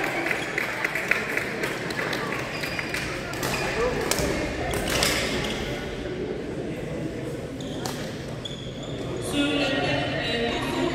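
Badminton play in a large, echoing sports hall: sharp racket strikes on the shuttlecock and footsteps on the court floor, with voices from around the hall.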